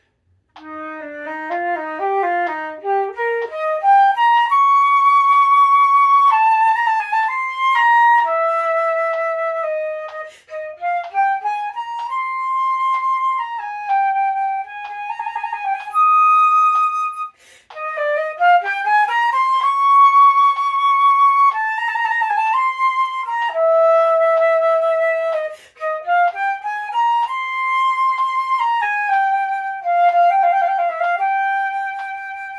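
Silver concert flute playing a slow etude straight through. It opens with a run climbing from the low to the upper register, then moves in held notes and stepwise phrases, with a few short breaks for breath. A metronome ticks faintly at 64 beats a minute.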